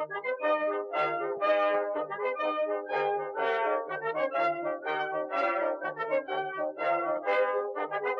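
Brass music: quick, short notes played together in chords over a repeating low bass note.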